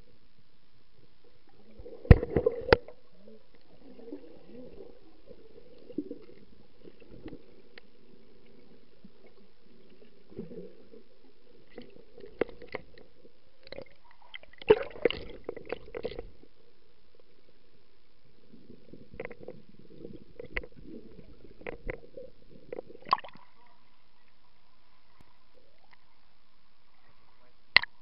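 Water swishing and gurgling around a camera held underwater while snorkelling, with sharp knocks against the camera about two seconds in and again in bursts around halfway and later.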